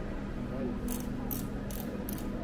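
A climbing helmet being fitted and adjusted on someone's head: three short scratchy rasps about half a second apart in the second half, from its straps and fittings.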